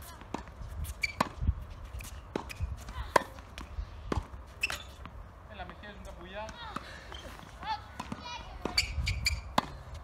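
Tennis balls being struck by rackets and bouncing on a hard court in a groundstroke rally: a string of sharp pops, roughly one every half second to a second, with one especially loud hit about three seconds in.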